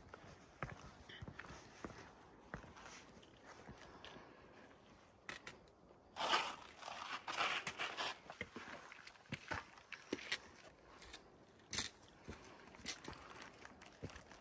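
Faint footsteps scuffing and crunching on a rocky dirt trail, with scattered clicks and taps, busiest in the middle.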